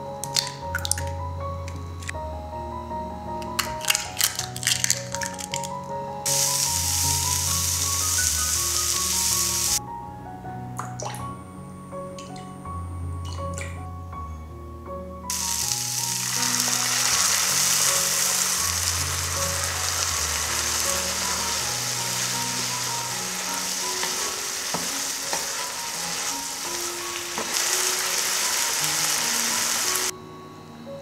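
Background music with a steady bass line throughout. Vegetables sizzle in a frying pan from about six to ten seconds in, and again from about fifteen seconds on as cream is poured over them. Near the start, a few sharp clicks of a fork beating an egg in a glass bowl.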